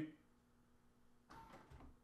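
Near silence, then about a second and a half in, a short faint whir from a Blum electric push-to-open drive unit as a press on the fridge door sets it going.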